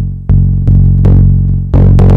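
Two-operator FM bass from an Elektron Machinedrum: a sine-wave carrier with its pitch modulated by a triangle-wave LFO, giving a warm low tone with overtones. It is played as repeated loud low notes, new ones starting about a quarter second, two-thirds of a second and just under two seconds in, each fading slowly.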